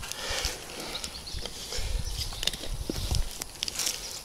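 Elephant garlic being pulled up by hand out of loose soil: scattered crackles of earth and roots giving way, with soft thuds and a low rumble from about two to three seconds in.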